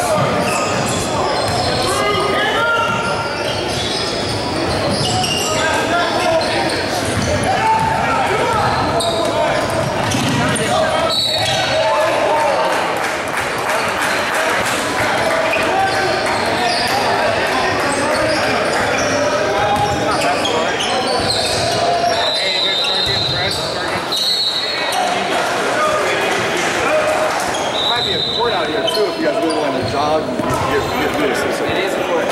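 Basketball game in a large gym: the ball bouncing on the hardwood floor and sneakers squeaking briefly several times, under echoing chatter and shouts from players and spectators.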